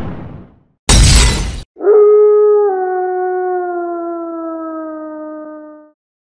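Two glass-shattering crashes, the second about a second in, then a long howl held for about four seconds, dropping slightly in pitch as it goes.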